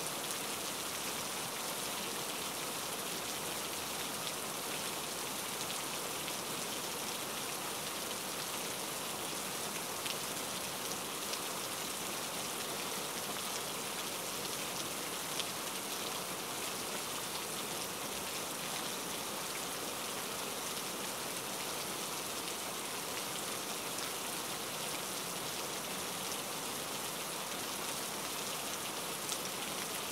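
Steady rain, an even hiss with a few faint ticks now and then.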